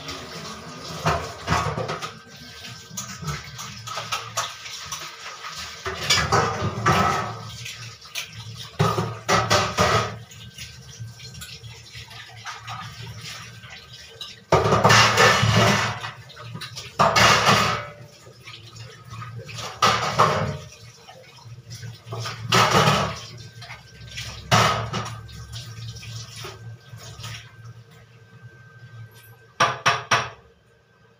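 Kitchen tap water running on and off in irregular bursts of about a second as dishes are washed by hand in the sink, with a lower background of running water and some clatter of pots and utensils in between.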